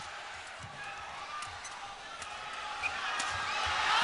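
Badminton rally in an arena: sharp racket strikes on the shuttlecock, a few times, over crowd noise that grows steadily louder toward the end.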